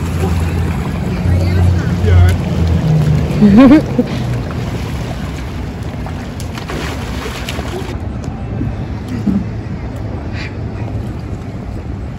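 Outdoor swimming-pool ambience: a steady rushing noise with water splashing as swimmers play ball, and a brief distant voice now and then.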